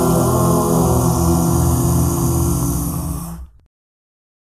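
A cappella voices holding a closing low chord, steady, that fades and stops about three and a half seconds in.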